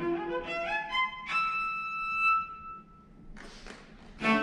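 Classical string music from a cello soloist and string orchestra: a quick run of notes climbs to a single high held note that fades away, followed by a short pause with a brief hiss.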